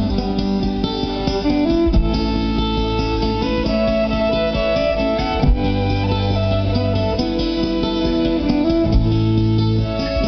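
Live band playing an instrumental passage: plucked and strummed strings over changing bass notes, with a few sharp drum hits.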